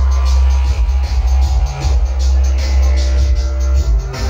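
Electronic backing beat played live from a laptop rig: a heavy, sustained sub-bass under a steady ticking hi-hat, about four ticks a second.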